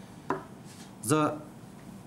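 A short pause in a man's speech at a microphone: a breath and a brief voiced sound about a second in, over quiet room tone.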